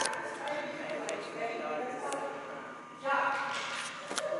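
Indistinct voices talking in a large, echoing hall, with a louder stretch near the end.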